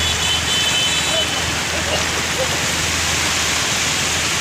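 Steady, loud hiss of heavy rain and rushing floodwater on a flooded street, with faint voices in the background.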